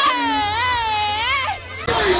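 A person's long, high-pitched shriek that wavers up and down in pitch for about a second and a half, then breaks off.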